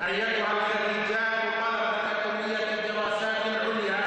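A man's voice chanting in a drawn-out, melodic delivery, holding long notes with small waverings in pitch rather than speaking in ordinary phrases.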